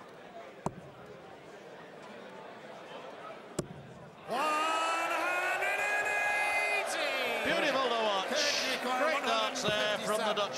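Two steel-tip darts thud into the dartboard just under three seconds apart, completing a maximum 180 in the treble 20. About four seconds in, the caller's long drawn-out "one hundred and eighty" rings out over a sudden burst of crowd cheering.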